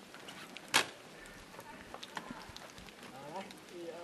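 A single sharp click about three-quarters of a second in, over a quiet background with a few smaller ticks; faint voices talking come in near the end.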